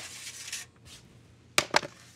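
Faint room hiss, then two sharp clicks close together about a second and a half in.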